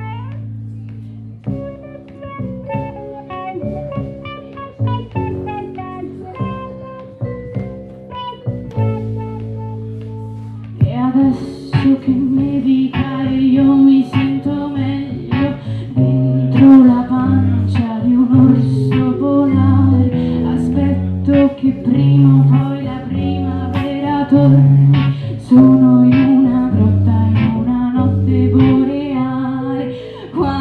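Live band playing a song: a soft instrumental opening of held melodic notes, then about eleven seconds in the drums and full band come in louder, with a woman singing at the microphone.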